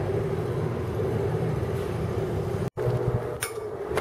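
Steady background hum and low rumble, broken by a very short gap of silence about two-thirds of the way in, after which it carries on with a few faint clicks.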